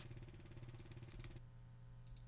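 Near silence: a faint low hum, with a faint fast buzz that stops about one and a half seconds in.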